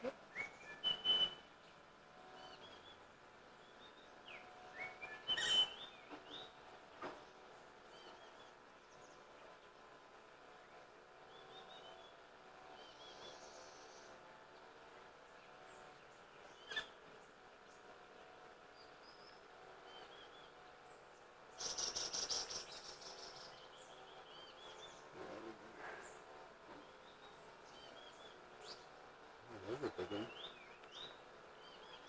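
Small forest birds chirping and calling in short, high notes again and again, faint. There are a few soft knocks, and about two-thirds of the way in a brief rush of noise.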